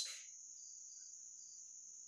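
Faint, steady, high-pitched insect trill, with a softer chirp repeating about three times a second.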